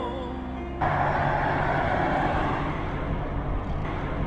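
A song with singing stops abruptly under a second in, giving way to a pickup truck driving along a road: a steady rush of engine and tyre noise, loudest right after the cut and easing off slowly.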